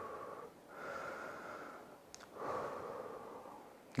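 A man's slow, deep, controlled breaths, three long breath sounds in a row, taken to bring the heart rate down during a rest between exercise sets. A faint click about two seconds in.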